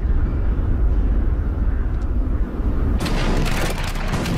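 A deep, loud rumble, then about three seconds in a sudden crackle of many overlapping shots: a massed musket volley.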